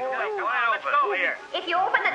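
Cartoon character voices: lively, speech-like vocalising with no clear words.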